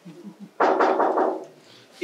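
A man's long wordless voiced yawn starting about half a second in and lasting about a second before fading.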